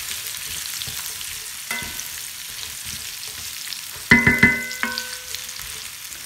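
Oiled diced potatoes sizzling steadily in a hot, preheated cast iron skillet. A ringing metal clank comes a little under 2 s in, and a louder run of ringing clanks about 4 s in.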